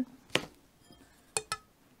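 A few light clicks and clinks of small craft tools being handled on a tabletop: one click, then about a second later two more in quick succession.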